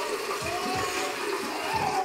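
Tap water running into a sink, with a man's drawn-out voice sliding up and down in pitch over it.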